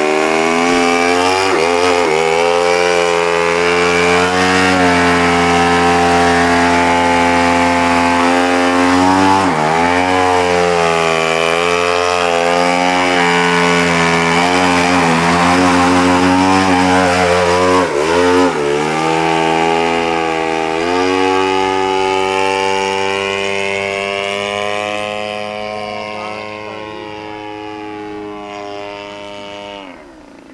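Gasoline engine of a radio-controlled aerobatic model airplane running hard, a steady buzzing note that dips briefly twice with the throttle. It fades gradually over the last few seconds as the plane climbs away.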